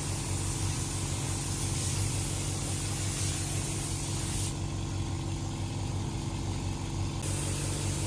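Gravity-feed paint spray gun hissing as it sprays paint onto a car body, over a steady low hum from the air compressor. The hiss drops away for a few seconds a little past halfway, then comes back.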